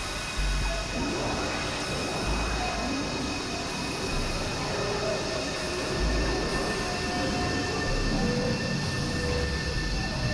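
Experimental electronic noise drone: a dense wash of noise with several steady high tones held throughout, and swells of low rumble every few seconds.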